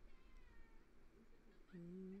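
Near silence, then about two seconds in a man's closed-mouth "mm" hum on one steady held pitch.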